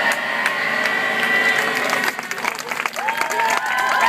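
A group of people singing or calling out long held notes, with clapping and cheering. The notes drop out about two seconds in and new ones start near the end.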